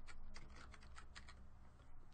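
Typing on a computer keyboard: a quick run of keystrokes, about six to eight a second, that stops about a second and a half in, then one more key press near the end. The typing is quiet.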